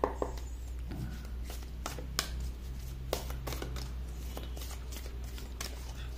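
A deck of archetype cards shuffled by hand: a run of irregular soft clicks and slaps as the cards are cut and dropped over one another, over a steady low hum.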